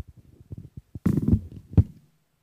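Handheld microphone being handled and set down: a run of soft low knocks, then two louder rustling bumps, about a second in and near the end.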